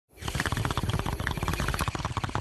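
A fast, irregular run of crackles and pops, like liquid bubbling.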